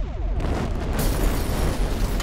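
Explosion sound effect: a short falling tone at the start, then a noisy blast that builds from about half a second in and carries on as a rumble.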